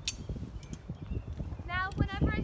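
Footsteps stepping off a wooden platform and walking on wood-chip ground, irregular low thuds and scuffs. A sharp click comes right at the start.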